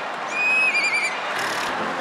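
A girl's high, thin vocal call: one long held note that breaks into a quick wavering warble, heard over the noise of a studio audience.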